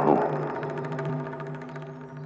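Background score: a sustained low drone with a fast, even pulse, slowly fading, after the tail of a man's spoken word at the start.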